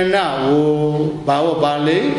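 A Buddhist monk chanting in a drawn-out, melodic voice: two long held phrases with pitch slides, broken by a short pause about a second in.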